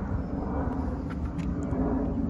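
A steady low rumble with no sharp events.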